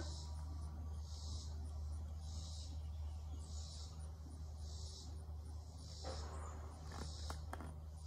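Insects singing outdoors in soft, even pulses, about one a second, over a low steady hum. A few light clicks come near the end.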